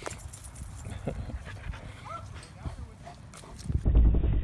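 A dog giving a short whine about two seconds in, amid scattered light clicks, with a low rumble of handling noise near the end.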